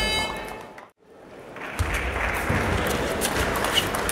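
Table tennis ball clicking off bats and the table in a rally, short sharp ticks over the steady noise of a large sports hall. In the first second a music-like tone fades out to a brief silence before the hall sound comes in.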